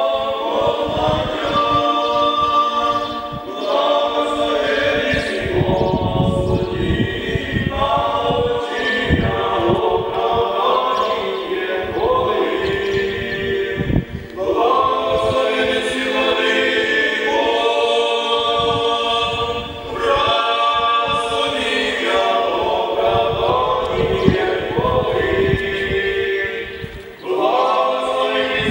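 An unaccompanied choir singing slow, sustained phrases, with brief breaks between them.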